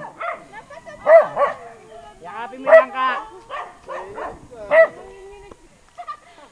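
A dog barking several times in short, loud, irregular bursts.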